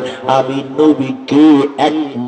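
A man's voice chanting a Bengali waz sermon in a melodic, sing-song delivery into a microphone, the pitch swelling and bending over drawn-out syllables.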